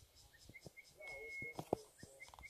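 Faint hushed whispering voices, with a few sharp clicks near the end. A steady high tone comes and goes in the background.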